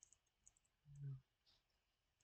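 Near silence with a few faint, sharp clicks of a fingernail picking at the edge of a dried peel-off charcoal face mask, trying to lift it. A brief low hum sounds about a second in.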